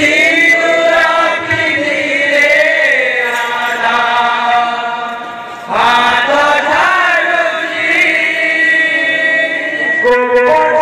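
Kirtan singing of an Odia bhajan: men's voices holding long, drawn-out wavering notes, a fresh loud phrase starting a little before six seconds in.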